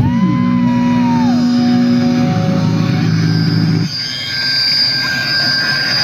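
Electric guitars through amplifiers ringing out on held notes, one note bent up and back down in the first second or so. About four seconds in the held notes stop and a noisier sound with a steady high whine takes over.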